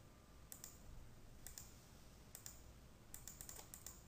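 Near silence with a few faint computer mouse clicks, in quick pairs, and several more close together near the end.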